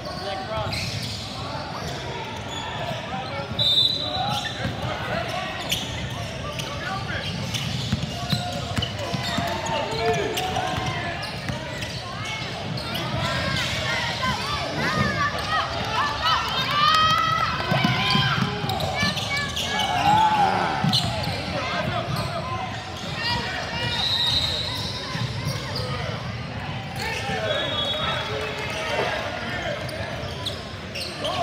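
Basketball bouncing on a hardwood gym floor during play, with voices of players and spectators calling out over it.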